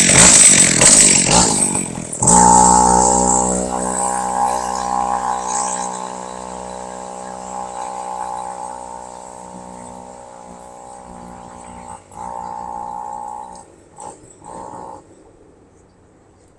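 A two-stroke chainsaw engine driving a homemade scooter revs loudly as the scooter pulls away. It then settles into a steady engine note that fades as the scooter travels off down the street. Near the end the throttle is blipped in a few short bursts, heard from a distance.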